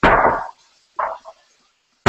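A dog barking twice: one loud bark right at the start and a shorter, quieter one about a second later.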